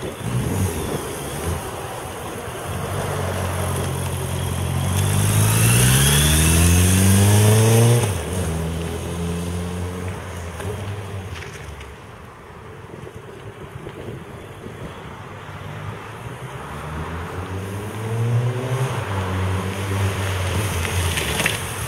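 Suzuki Bandit 1200S oil-cooled inline-four motorcycle engine pulling hard, its pitch climbing to a loud peak about eight seconds in, then dropping suddenly and fading as the bike rides away. It grows louder and revs up again in the last few seconds as the bike comes back.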